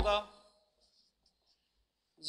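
Marker pen writing on a whiteboard: a few faint short scratches and squeaks, in the first second or so after a spoken word ends.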